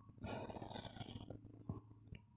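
Faint rustle of cotton wax-print fabric being handled and smoothed flat on a table, lasting about a second, with a few light taps.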